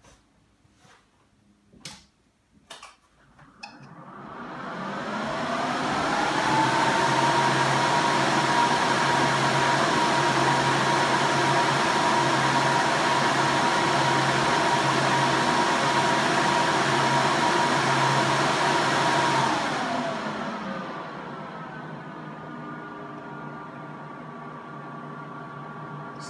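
A few switch clicks as the power switches are flipped, then the cooling fans of a 16-bay 48TB RAID disk array (a Promise VTrak rebrand) spin up to a loud steady rush with a steady whine. After about fifteen seconds they rev back down to a quieter, still plainly audible steady level, as the array finishes its power-on.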